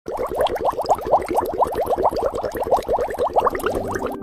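A bubbling sound effect: a rapid run of short upward-sliding bloops, about eight a second, starting abruptly and keeping an even level throughout.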